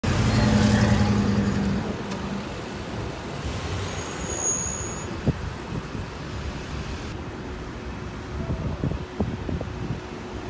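A white van driving past close by, its engine hum loudest at first and fading away within about two seconds, leaving steady street traffic noise with a few short sharp clicks later on.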